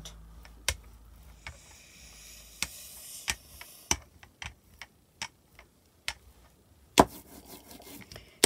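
Rubber brayer rolling thin metallic paint across a gel printing plate: scattered tacky clicks and a short hiss of rolling about three seconds in, with one louder click near the end.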